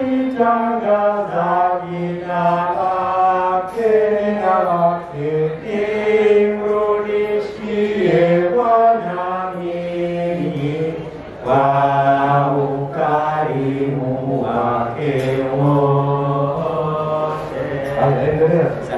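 Two priests singing a song together into handheld microphones, holding long notes that step up and down in pitch.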